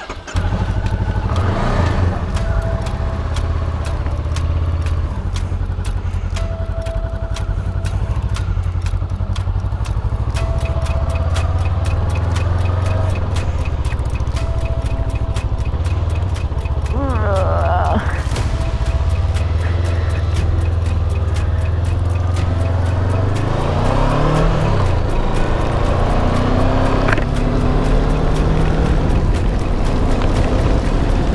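Honda motorcycle engine running steadily, then revving up and rising in pitch as it accelerates through the gears, about halfway through and again a few seconds later.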